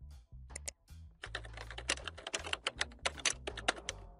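Computer keyboard typing sound effect: a few separate key clicks, then a fast, dense run of clicks. It plays over low background music.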